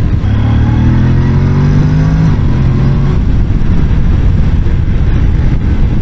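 Honda NC750X parallel-twin engine rising in revs under acceleration for about three seconds, then sinking under heavy wind rush on the helmet-mounted microphone at road speed.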